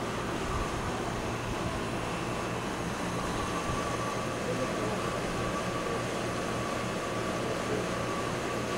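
Steady hum and hiss of room noise with a faint, high, steady tone and no distinct events.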